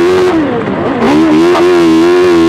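Autocross racing car's engine running hard at high revs on board; the revs drop off about a third of a second in and climb back up by about a second in, then hold steady and high.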